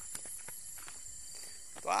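Soft footsteps of a person walking on a dirt track: a few faint, irregular steps. A faint steady high insect drone lies underneath.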